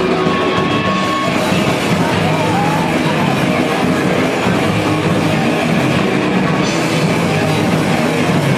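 A ska-punk band playing live, loud and steady: electric guitars, bass and drum kit, heard from within the audience. The top end brightens near the end of the stretch.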